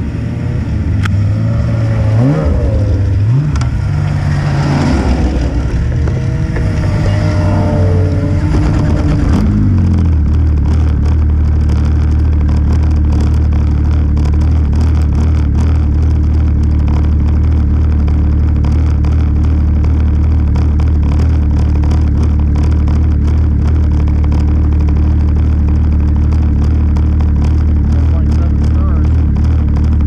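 Snowmobile engines. For the first ten seconds engine notes rise and fall as machines rev, then a single engine idles steadily at a low, even note.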